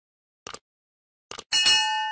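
Subscribe-button sound effects: two quick double clicks like a computer mouse, then a bright bell chime about one and a half seconds in that rings on and slowly fades.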